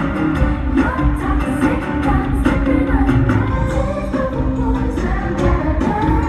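Live pop music with singing over a heavy bass beat, played through a concert sound system in an arena.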